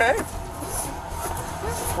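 Seat-belt webbing and clothing rustling as a seat belt is pulled across a passenger in a patrol car's back seat, heard up close. A steady low hum and background music run underneath.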